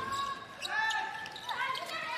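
Live court sound of an indoor handball match in play: short shouted calls and a few sharp knocks of the ball on the court floor.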